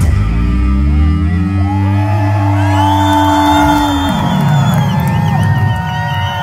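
A live hard-rock band's final chord ringing out and stopping about four seconds in, while the crowd whoops and cheers, the cheering building from about halfway through.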